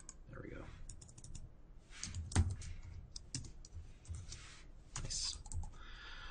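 Computer keyboard typing: irregular keystrokes in small runs, with one louder key strike about two and a half seconds in.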